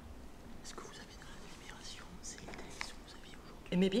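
Faint whispering and low murmured voices in a quiet room, then a man starts speaking near the end.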